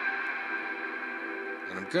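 Electric guitar chord ringing on through the Boss GT-1000's long hall-type reverb. It is a steady wash of many tones held together, slowly fading, with the reverb set fully extended, at high density and strong in level.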